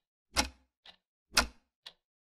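Clock ticking sound effect: a loud tick once a second with a fainter tick halfway between each, counting down.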